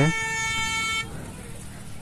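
A motorcycle horn sounds one steady, buzzy tone for about a second and cuts off suddenly, leaving the low hum of street traffic.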